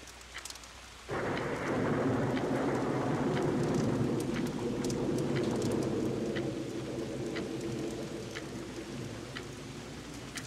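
Rain falling with scattered drop ticks, then a thunderclap about a second in that rolls on as a long rumble and slowly fades.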